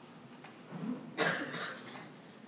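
A single cough about a second in: a short sharp burst that dies away within about half a second.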